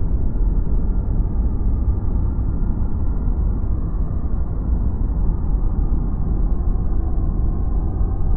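Underwater vortex sound effect: a steady, muffled low rumble of churning water, with no high sounds at all.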